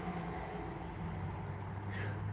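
A steady low hum, faint and even, with no other sounds.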